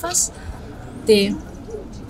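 News narration in Malagasy: a voice speaking a couple of short words with pauses between them.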